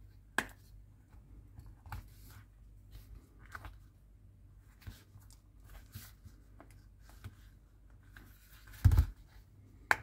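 Rubber tyre being pressed and worked onto a plastic scale-model wheel rim by hand: faint scattered rubbing, creaking and small clicks, with one louder low thump near the end and a sharp click just after.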